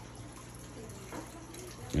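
Aquarium filter outflow pouring steadily into the tank water, a continuous splashing trickle over a low steady hum.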